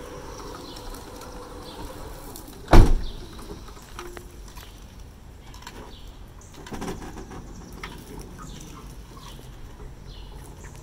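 The power ramp and sliding door of a 2015 Toyota Sienna with a VMI Northstar wheelchair conversion are stowing and closing. There is one sharp, loud clunk about three seconds in, and a smaller burst of mechanical sound around seven seconds as the door runs shut.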